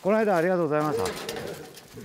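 A person's voice calling out a drawn-out greeting with a wavering pitch, lasting about a second and then fading.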